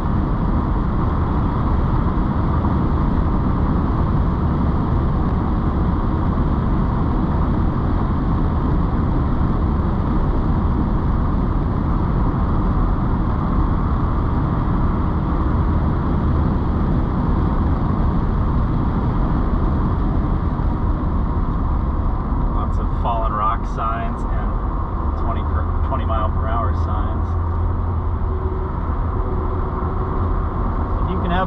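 Steady in-cabin sound of a 1988 Mercedes-Benz 560SL under way: a low drone from its V8 engine, mixed with road and tyre noise, holding an even level throughout.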